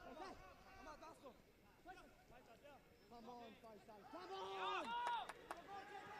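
Faint men's shouts and calls on a football pitch, several short calls with a louder, longer one about four seconds in.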